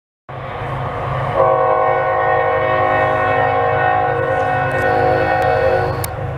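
Freight locomotive air horn sounding one long chord of several notes, louder from about a second in and cut off right at the end, over the low rumble of the approaching diesel locomotive: a horn salute from the engineer.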